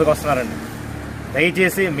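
A voice narrating in Telugu, broken by a pause of about a second in the middle. During the pause only a steady low background noise remains.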